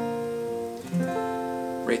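Acoustic guitar capoed at the third fret: a G-shape chord (sounding B flat) rings and fades, then about a second in a D-shape chord (sounding F) is strummed and rings. The change is made with the third finger held in place as a pivot.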